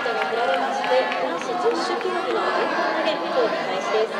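Crowd of spectators' voices, many people talking at once in a steady babble with no single clear speaker.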